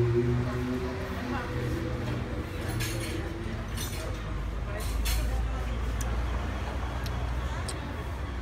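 Low engine rumble of a road vehicle passing, swelling about five seconds in and fading near the end. Two sharp clinks of tableware come before it, the second just as the rumble rises.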